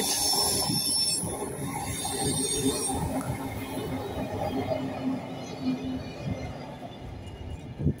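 Old CFL regional passenger train passing close by: a steady rumble of wheels on the rails, with a high-pitched wheel squeal loudest in the first few seconds. The sound fades as the train moves away.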